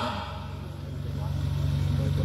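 A steady low hum fills a pause in amplified speech, growing slightly louder through the pause.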